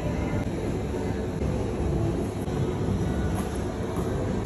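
A metal spatula scraping frozen ice cream across a cold steel ice pan as it is rolled up, over a steady low machine rumble.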